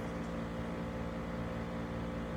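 Room humidifier running: a steady hum with an even hiss underneath.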